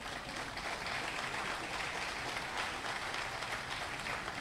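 Audience applauding, heard faintly and steadily through the podium microphone.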